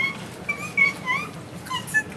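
A woman's high-pitched, wavering whimpers of distress: several short, crying sounds one after another.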